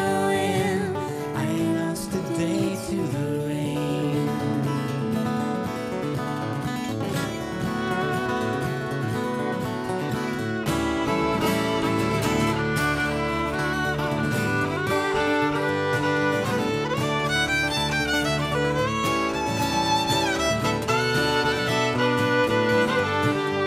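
Fiddle playing an instrumental break in a folk song, over acoustic guitar accompaniment.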